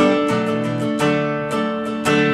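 Acoustic guitar strummed, chords ringing with a stroke about every half second, in an instrumental gap between sung lines.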